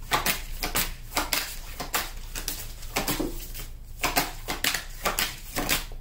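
A tarot deck being shuffled by hand: a run of irregular soft card slaps and flicks, several a second.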